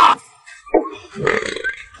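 A man gulping hot-pot broth straight from a metal pot, with loud gulping and swallowing throat sounds, the loudest right at the start.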